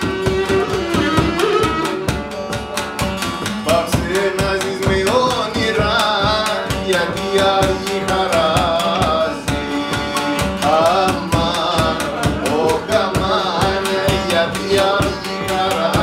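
Cretan syrtos played live on Cretan lyra, laouto and a barrel drum beaten with a stick, keeping a steady dance rhythm. From about four seconds in, the lyra player sings over the instruments.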